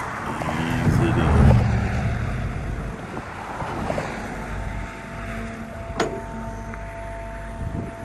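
Excavator engine running under load while its hydraulics work to lower a steel trench box into a trench. A steady whine comes in about five seconds in, and there is a single sharp knock about six seconds in.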